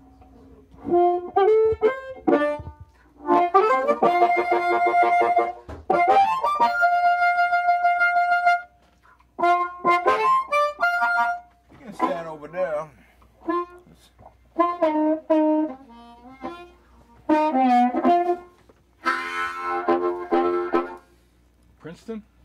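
Blues harmonica played in short phrases with pauses between them, with bent notes and a warbling passage about halfway through.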